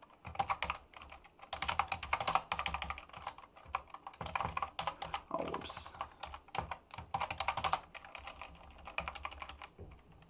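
Typing on a computer keyboard: quick bursts of keystrokes separated by short pauses.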